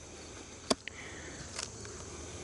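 Quiet outdoor background with a faint steady insect sound, broken by one sharp click about two-thirds of a second in and a fainter tick just after it, from hands and hive tool working the wooden hive's inner cover.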